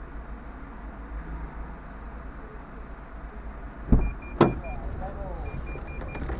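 Low steady rumble inside a stationary car, then two sharp knocks about half a second apart about four seconds in, followed by a run of short high electronic beeps.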